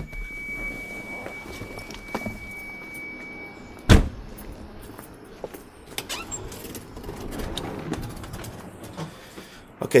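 A car's door-open warning tone sounds steadily, then the car door is slammed shut about four seconds in, cutting the tone off. Scattered clicks and knocks follow as a house door is unlocked and opened.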